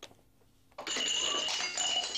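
A tray of drinking glasses dropped onto a tile floor, smashing about a second in: a sudden crash of breaking glass followed by shards ringing and clinking.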